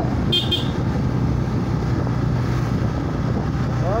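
Steady engine hum and road noise of a vehicle moving along a mountain road, heard from on board. A short high toot comes about a third of a second in.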